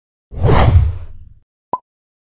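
Whoosh sound effect of an animated logo intro: a loud swoosh with a low rumble lasting about a second, then a short, sharp blip.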